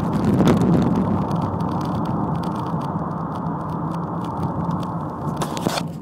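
Ford Mondeo Mk3 engine and road noise heard from inside the cabin while driving, loudest in the first second and then easing off steadily. A few knocks near the end.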